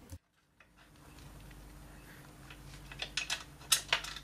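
Light metallic clicks and clatter of a steel U-bolt being slid through the holes of a motorcycle skid plate. A few sharp clicks come in the second half, over a faint low hum.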